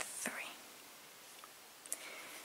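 A softly spoken word, "three", at the start, then faint steady room hiss with a brief click near the end.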